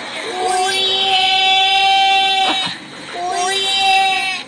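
A man's voice singing long, high held notes: one held for about two seconds, then, after a short break, a second one.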